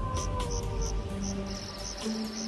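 Night ambience of crickets chirping in an even rhythm, about two to three chirps a second, with a faster trill joining near the end. The tail of a wolf howl slides down in pitch and fades in the first half second or so, over a low music bed.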